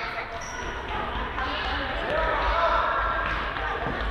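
Indoor football striking and bouncing on a sports-hall floor, with players and onlookers shouting indistinctly, all echoing in the large hall.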